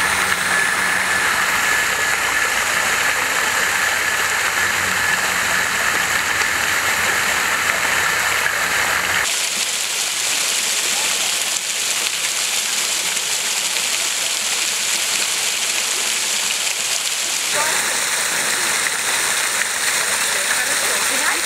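Fountain water streaming over a bronze head sculpture and splashing into its basin: a steady rushing hiss. The sound changes abruptly about nine seconds in and again near the end.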